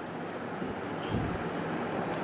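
Steady background noise with a faint low rumble that swells briefly a little after a second in.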